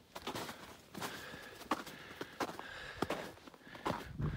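Footsteps crunching in snow at a walking pace, boots fitted with Yaktrax traction cleats, each step a short crunch roughly every two-thirds of a second.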